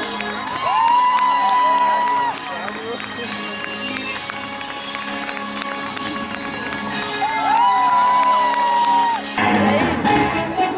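Music soundtrack: a song with long held notes that slide up and then hold, changing suddenly near the end to orchestral strings.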